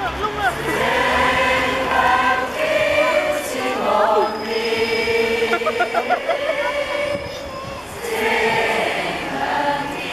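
A group of carol singers, adults and children together, singing a Christmas carol, with long held notes. The singing softens for a moment about seven seconds in, then picks up again.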